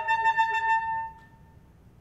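Alto saxophone holding one note that stops about a second in and dies away with a short ring of the room, leaving a pause.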